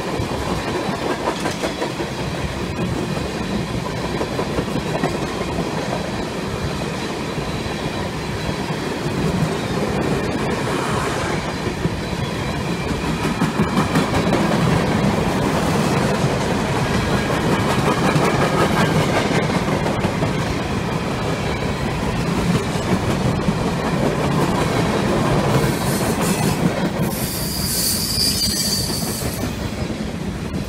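Freight train cars rolling past: a steady rumble and clatter of steel wheels on the rails, with a high-pitched wheel squeal near the end.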